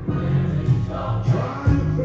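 A gospel song with choir singing over a steady bass line.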